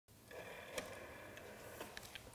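A rotary telephone dial being turned by hand: faint, with a few soft clicks.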